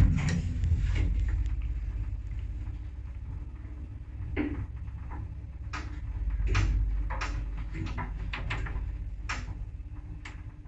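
Single-speed ZUD passenger lift starting with a heavy clunk as its button is pressed, then travelling with a steady low hum and rumble of the hoist machinery. Sharp clicks sound every second or so through the second half of the ride.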